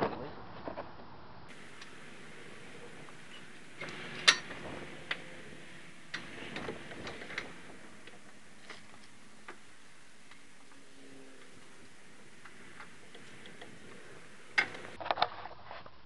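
Scattered light clicks and knocks of metal parts as a CV axle is worked free of the front hub and swung down, with the sharpest knock about four seconds in and a short cluster of clicks a few seconds later, over a faint steady background.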